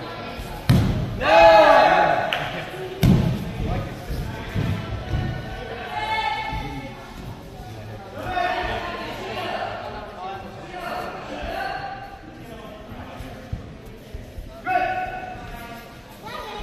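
Two heavy thuds of bodies or feet landing on the mats during aikido sparring, in the first few seconds, among indistinct voices in a large hall. A loud voice rises just after the first thud.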